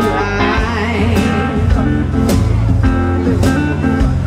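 Live blues band playing: a semi-hollow electric guitar line with bent notes over bass guitar and a drum kit, with a cymbal or drum strike about once a second.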